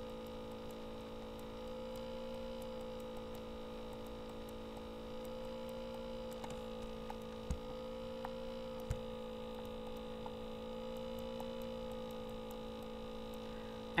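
Steady electrical hum, made of a couple of steady tones, with two faint clicks about halfway through.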